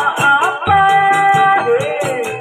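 Kuda lumping (jaranan) accompaniment music: a wavering high melody with held notes over drumming and a steady jingling beat at about four strokes a second.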